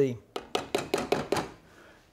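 A fine-mesh strainer knocked against the rim of a stainless saucepan: a quick run of about seven sharp metallic taps in just over a second, then it stops.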